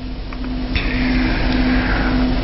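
Steady low electrical hum with a faint steady tone above it, in a gap between speech; a soft hiss joins about three-quarters of a second in.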